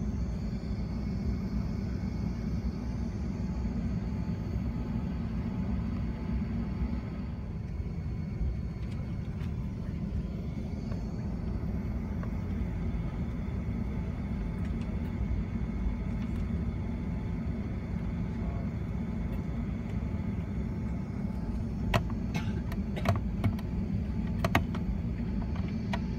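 Cabin noise of a British Airways Airbus A380 taxiing: a steady low rumble from its Rolls-Royce Trent 900 engines at low thrust and the rolling gear, with a faint high whine. A quick run of sharp clicks comes near the end.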